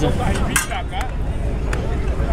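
A steady low rumble with faint voices in the background, and a few light clicks about half a second and a second in.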